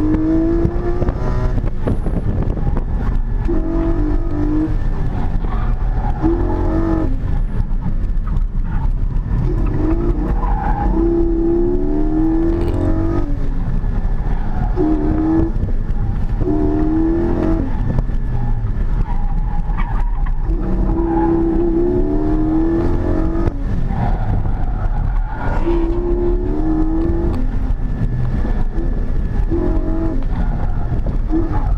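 Porsche 718 GT4's naturally aspirated flat-six engine at full effort through an autocross run, heard from inside the cabin: the revs climb, drop off, and climb again over and over as the car accelerates between cones and lifts or brakes for the turns.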